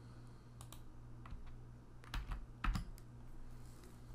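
Typing on a computer keyboard: a few short clusters of quiet keystrokes while the keyword 'synchronized' is entered into Java code.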